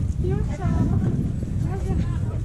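Busy market street: several passers-by talking over a steady low rumbling and knocking noise.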